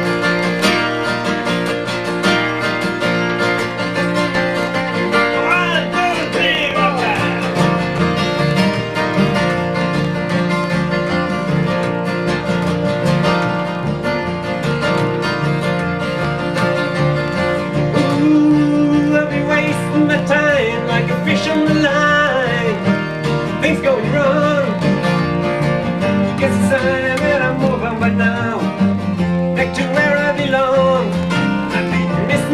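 Two acoustic guitars and an upright double bass playing a country-folk tune live, steady and continuous.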